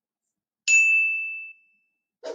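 A single high-pitched ding about two-thirds of a second in, ringing out and fading over about a second: the notification-bell chime sound effect of a subscribe-button animation, played as the bell is clicked.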